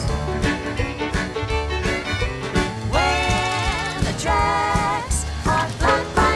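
Lively country-swing style music score with a steady bass beat and a melody line that wavers in vibrato through the middle.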